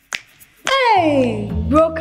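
Advertisement soundtrack: a sharp snap-like click in near silence, then a long falling glide in pitch, with background music and a bass line coming back in about a second in.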